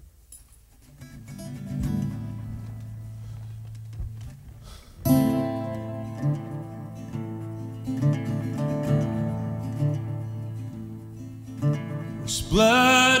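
Instrumental intro on acoustic guitar, harp guitar and violin. Soft low guitar notes start after about a second. About five seconds in, the full trio comes in louder, with sustained bowed violin notes over the guitars.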